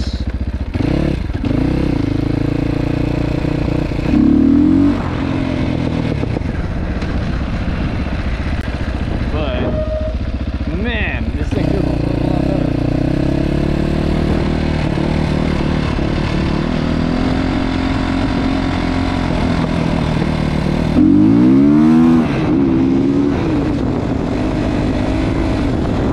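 GPX FSE300R motorcycle engine, running on an ARacer Mini5 aftermarket ECU whose tune is still being tweaked, revving up and down through the gears as the bike is ridden. There are two short, louder bursts of hard acceleration, about four seconds in and again about five seconds before the end.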